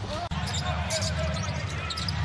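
Basketball arena game sound: a steady crowd rumble with a basketball being dribbled on the hardwood court. The sound drops out sharply for an instant just after the start.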